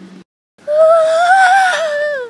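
A child's scream, loud and long, one held scream that starts about half a second in after a moment of dead silence, its pitch rising a little and then easing down.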